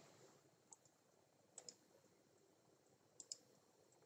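Near silence with a few faint clicks, two close pairs about a second and a half apart, from the presentation slide being advanced on a computer.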